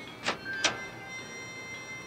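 Front door handle and latch clicking twice in quick succession as the door is opened, over a faint steady background tone.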